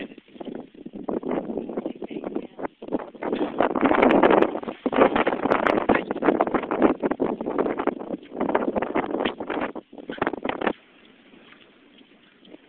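Wind buffeting the microphone in loud, irregular gusts, cutting off sharply near the end.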